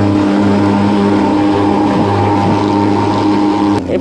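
Hand-carried thermal fogging machine running with a steady, low drone while it blows out insecticide fog against mosquitoes. It cuts off suddenly near the end.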